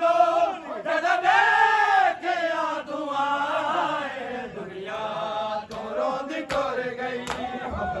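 Men's voices chanting a Punjabi noha (mourning lament) together. In the second half, sharp strikes of hands on chests (matam) come in time about once a second.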